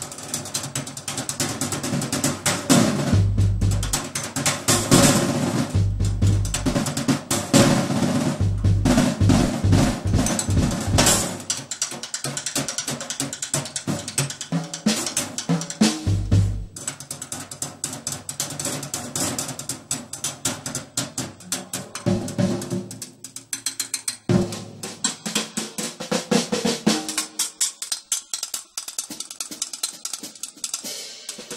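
Drum kit played with sticks: busy, rapid strokes on snare and toms under ringing cymbals, with heavy bass-drum hits in clusters through the first half. The playing thins out and gets quieter in the last few seconds.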